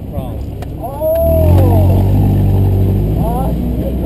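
BMW 318i (E36) four-cylinder engine picking up about a second in and running steadily as the car pulls away, with a long drawn-out excited shout over it and more voice shortly before the end.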